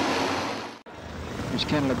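Speedway motorcycle engines, JAP single-cylinder four-strokes, running at racing speed as a dense continuous noise that cuts out abruptly a little under a second in, then comes back quieter.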